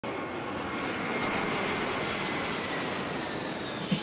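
Aircraft passing: a steady rushing roar with a faint high whine that slowly falls in pitch.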